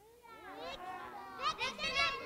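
A group of young children chattering and calling out over one another, many high voices overlapping, louder from about a second and a half in.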